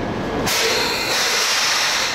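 Railway train noise: a low rumble gives way about half a second in to a steady hiss.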